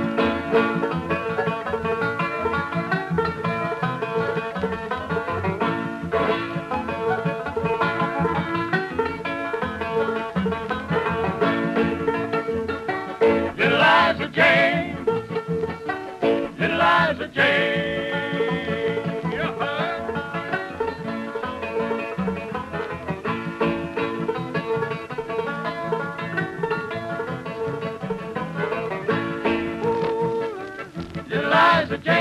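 Five-string banjo playing a fast old-time instrumental in a hillbilly string band, heard on a 1940s radio transcription recording. Two short louder bursts with sliding pitch come about halfway through.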